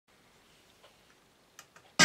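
Near silence with a few faint clicks: one about a second in and two close together near the end.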